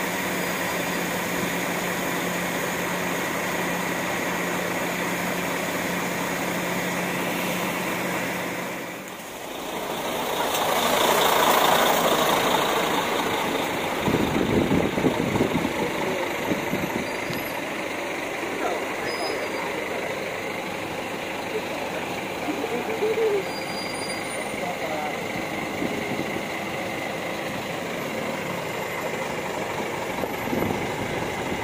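Diesel coach engines running in a bus yard: a steady hum at first, then a sudden break about nine seconds in. After it, a louder swell of engine noise settles into a steady low running of a nearby coach engine.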